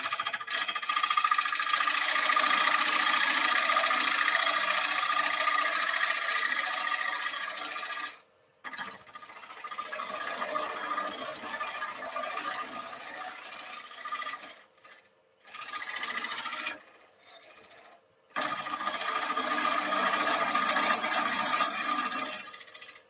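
Parting tool cutting into a wooden blank spinning on a wood lathe: a steady scraping hiss of the edge taking shavings, a three-millimetre parting cut. The cut breaks off briefly about 8 seconds in and twice more near the end.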